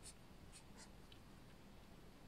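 Faint scratching of a felt-tip marker on graph paper, a few short strokes in the first second or so, as diamond shapes are drawn.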